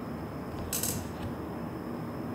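Faint metallic rattling of a steel head gasket being handled and shifted against a bare Toyota 1JZ engine block. There is one brief, brighter rattle a little under a second in.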